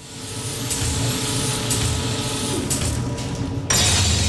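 Sound-design transition effect: a mechanical whirring bed with a low steady hum swells up over the first second, then a sudden louder whoosh-like burst hits near the end.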